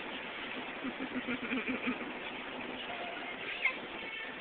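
Miniature schnauzer whining in a run of short, quick whimpers about a second in, over the steady road noise of a moving car.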